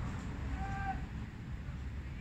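Wind rumbling on the microphone, with one short distant call about half a second in.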